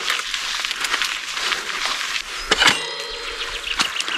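Mountain bike rolling over gravel and coming to a stop, with a few sharp clicks and a quick rattle about two and a half seconds in.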